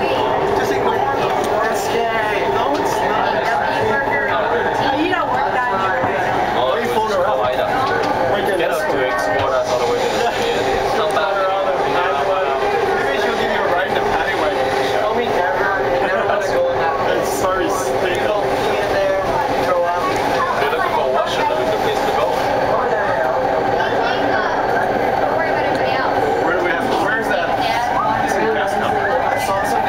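Indistinct passenger chatter inside a moving Canada Line metro train, over the train's steady running noise, which carries a few held tones.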